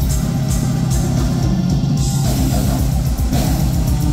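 Symphonic black metal band playing live at full volume through the PA: heavy distorted guitars over rapid, even kick-drum pulses and cymbal wash.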